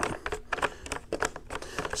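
A plastic tank bulkhead fitting being turned by hand on a plastic bucket lid: irregular light plastic clicks and scrapes.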